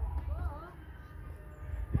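A child's short, faint call about half a second in, over a steady low rumble, with a dull thump just before the end.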